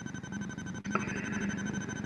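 Pause in speech on a video-call line: faint background noise, with a faint steady low hum setting in about halfway through.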